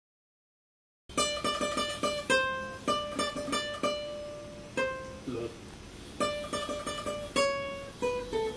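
Nylon-string classical guitar played solo with the fingers. It starts about a second in with quick runs of plucked, often rapidly repeated notes that ring out, thins to a few sustained notes around the middle, then picks up again.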